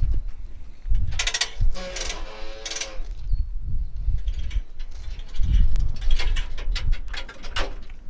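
Spring-rewind fuel hose reel paying out as the hose is pulled off it, its ratchet clicking so fast it runs into a buzz about one to three seconds in, with fainter clicks and low thuds after.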